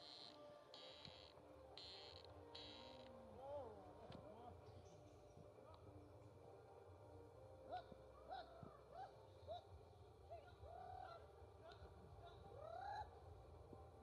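Faint animal calls: a string of short rising-and-falling calls, several in a row, starting about three seconds in. A few short, high buzzing pulses sound in the first seconds.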